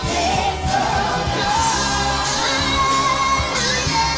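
A woman singing a gospel praise song into a microphone over amplified band backing with a steady low beat.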